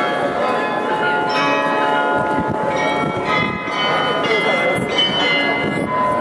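The tower bells of the Munich Rathaus-Glockenspiel chime a tune: one note after another is struck and left to ring, so the tones overlap. A crowd murmurs faintly beneath.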